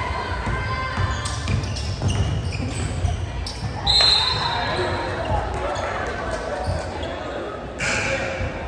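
Basketball being dribbled on a hardwood gym floor, sharp bounces over echoing crowd chatter in a large gym, with a brief high squeal about four seconds in.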